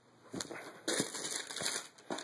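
Tissue paper and a cardboard shoebox rustling and crinkling as a sneaker is handled in it: a couple of light knocks, then about a second of crinkling.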